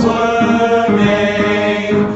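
Male voices singing held, wordless notes, the pitch stepping to a new note about every half second.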